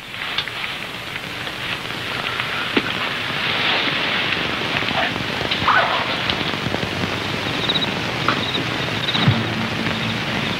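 A helicopter's engine and rotor running steadily, heard as a continuous rushing noise, with a few faint knocks.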